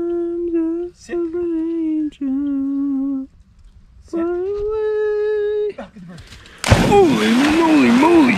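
A person humming a tune in long held notes, one after another with short gaps. About seven seconds in, loud splashing starts as a dog bounds through shallow river water, with a wavering voice-like tone over the splashing.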